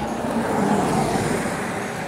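A road vehicle passing by, its noise swelling to a peak about a second in and then fading.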